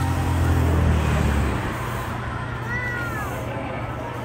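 A short meow-like cry that rises and falls, about three seconds in, over a low steady rumble that fades after the first second and a half.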